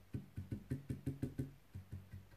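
Paintbrush dabbing paint onto a metal number plate: a quick, regular run of light taps, about six a second, that stops about three-quarters of the way through.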